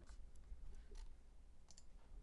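Faint clicks of a computer mouse, a few scattered ones and a close pair near the end, over low room noise.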